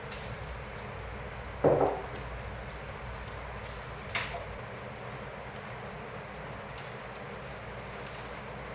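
Steady low room hum with a short, dull knock about two seconds in and a lighter, sharper clack about four seconds in, with a few faint ticks between.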